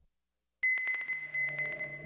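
Dead silence for about half a second, then a radio network's station-ident jingle starts: a steady, high electronic tone over a fast run of ticks that thins out, with a lower steady tone underneath.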